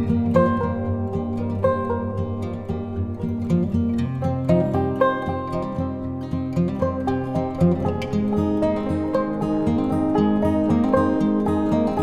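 Instrumental background music led by plucked strings, short picked notes over steady held low notes.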